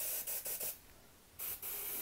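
Hand-pump pressure sprayer misting water, a hiss in quick, regular pulses that stops briefly about a second in and then starts again.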